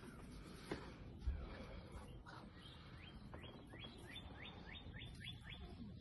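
A faint bird song: a run of about ten quick, rising whistled notes, roughly four a second, through the second half. Two soft low thumps come earlier.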